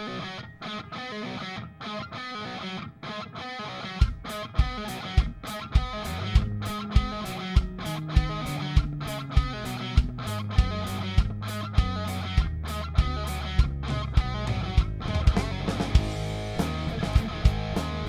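Playback of a multitrack rock recording: a live acoustic drum kit keeps a steady beat with hard kick and snare hits, along with guitar and bass notes. The drums come in much louder about four seconds in.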